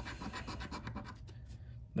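A coin scratching the coating off a lottery scratcher ticket, in a quick run of short scraping strokes.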